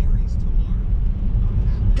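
Steady low road rumble and tyre noise heard inside the cabin of a moving Tesla Model 3, an electric car with no engine note.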